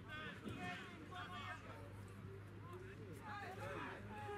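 Faint, distant voices talking and calling out across an open football pitch, over a steady low hum.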